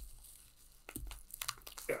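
Plastic bubble wrap crinkling as it is pulled open from around a stack of graded card slabs, quiet at first, then a run of short sharp crackles from about a second in.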